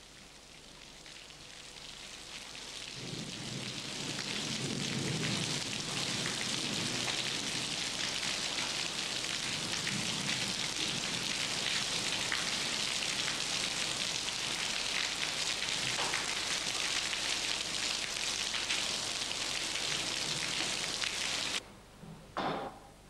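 Steady rain falling on a tiled roof, a dense even patter that fades in over the first few seconds, swells deeper a few seconds in, and cuts off suddenly near the end.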